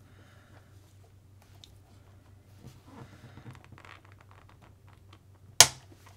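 Faint clicks and rustles of hands handling the small metal and plastic parts of an RC buggy's front suspension, with one sharp, loud click near the end.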